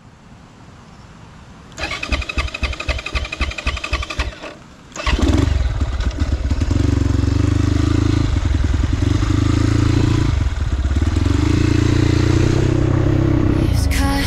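Dirt bike engine being cranked over in a rapid pulsing run for a couple of seconds, catching about five seconds in, then running steadily and loudly as the bike rides along, with a couple of brief dips in pitch.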